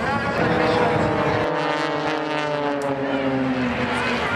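Formation of single-engine propeller aerobatic planes flying past, their engine and propeller drone falling slowly in pitch as they go by.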